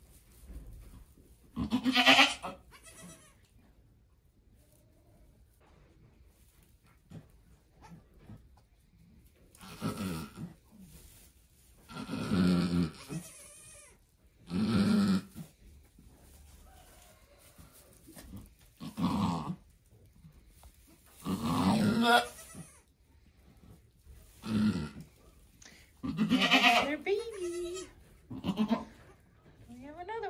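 Goats bleating in a barn stall, about nine loud drawn-out calls a few seconds apart: a doe in labour, about to deliver her second kid, with her newborn kid beside her.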